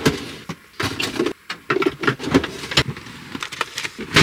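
Household things being handled in a small space: irregular knocks, clicks and rustles as a drawer of toiletries is searched and a wooden storage-bench lid is lifted to get out a curling iron and its cord.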